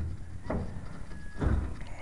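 Two dull thumps about a second apart over a low rumble.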